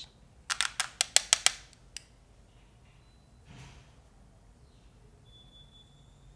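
A quick run of about seven sharp taps, then one more, as a fan brush is tapped and worked against a highlighter powder compact; a little later, a faint brief swish of the brush.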